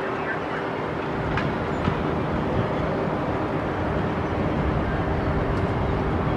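Amusement-park ambience: a steady low rumble of ride machinery with a steady hum and distant voices.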